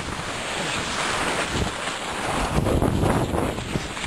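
Wind buffeting the microphone together with the rushing hiss and scrape of clothing sliding fast over packed snow, as a person slides down a ski slope on their back. The rush grows a little rougher and fuller in the second half.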